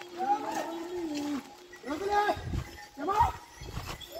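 A person's voice in three drawn-out phrases that rise and fall in pitch, with low rumbles beneath.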